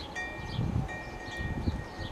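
A wind chime ringing: two clear high notes sound together just after the start, break off briefly, then ring again for longer. A low rumble of wind on the microphone runs underneath.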